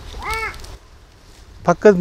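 A crow caws once: a single short call that rises and falls in pitch.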